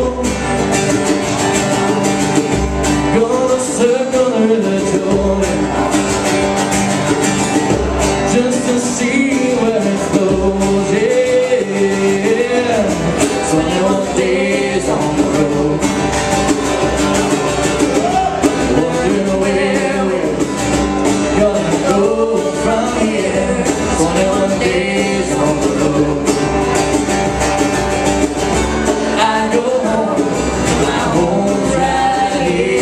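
A live band playing a song: strummed acoustic guitars with singing over them, continuing without a break.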